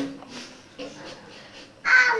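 A young child's voice: short wordless calls, with a loud call near the end that falls in pitch.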